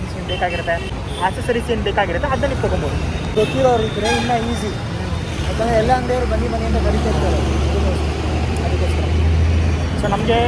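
Busy city street traffic: motorbikes and cars passing, with people talking close by. A heavy vehicle's low engine rumble grows strong over the last few seconds.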